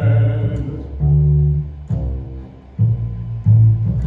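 Double bass played pizzicato: a walking line of about five separate plucked low notes, each about half a second long, while the last sung chord of the two baritones fades in the first half-second.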